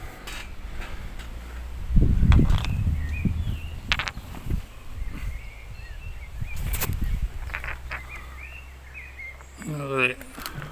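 Small jasper rocks handled in the hand and set against larger stones, with a few sharp clicks of stone on stone, over a low rumble on the microphone that swells about two seconds in. Small birds chirp faintly.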